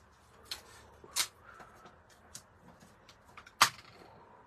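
Sticky tape pulled from a handheld tape dispenser and torn off to tape a die onto card. It comes as a few short, sharp rips and clicks, the loudest near the end.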